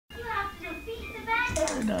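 A young child talking in a high voice, with another voice coming in near the end.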